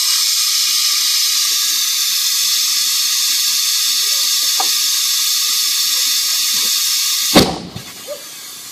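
Compressed air hissing steadily from an air hose at a trailer tire whose bead is not yet seated. Near the end, one sharp, loud bang as the ether in the tire ignites to blow the bead onto the rim. A quieter hiss of air carries on after it, and the bead is only partly seated.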